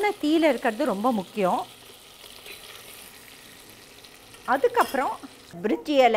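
Ginger-garlic paste sizzling in melted butter in a stainless steel pot, stirred with a metal ladle. The steady sizzle is heard alone for about three seconds in the middle, with a woman talking before and after it.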